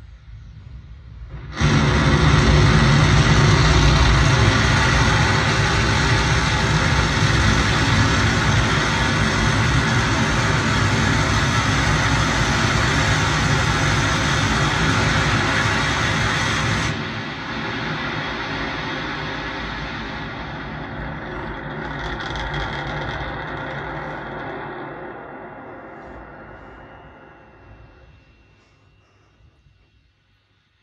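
Starship SN10's Raptor rocket engines firing on the landing burn, heard from the live feed through a TV's speakers and distorted. The noise starts suddenly about two seconds in. About seventeen seconds in it drops sharply to a lower rumble that fades out over the last few seconds.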